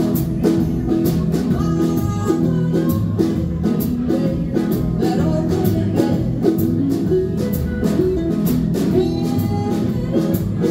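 A small live band playing a blues song: electric guitar, ukulele, upright bass and drum kit, with a steady beat from the drums.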